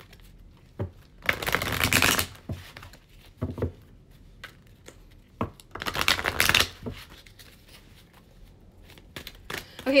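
A tarot deck being shuffled by hand: two bursts of card rustling, about a second long each, one early and one around six seconds in, with light taps and clicks of the cards in between.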